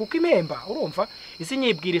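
Steady high-pitched insect chirring, heard under a man's voice talking in short phrases.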